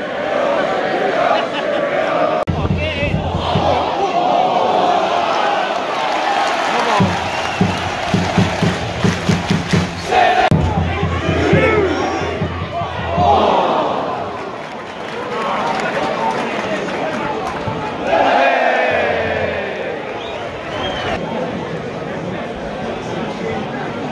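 Football stadium crowd shouting and chanting from the stands, many voices at once, with a run of quick rhythmic beats in the middle.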